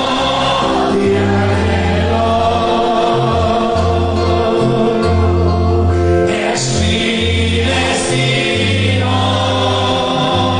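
Church congregation singing a praise song together, accompanied by instruments with a bass line of held low notes.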